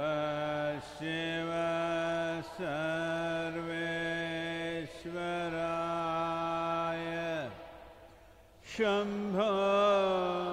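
A man's voice chanting a mantra in long held notes, each sustained for a second or two with brief breaths between. Near the end, one note falls away into a pause of about a second before the chant resumes.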